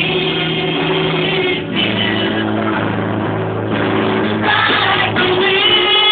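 Singing with instrumental accompaniment, in long held notes.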